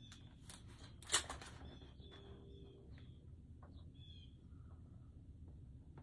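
Quiet room with light handling of a plastic-covered diamond painting canvas: one sharp click about a second in, and a few faint short chirps near the middle.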